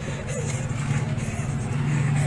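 A motor vehicle's engine running at a steady idle, a low even hum that grows slightly louder near the end.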